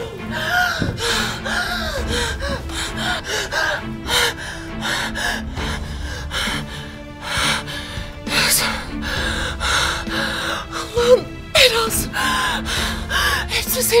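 A woman gasping and choking for breath, with short strained cries, as she is being choked by hands at her throat, over background music.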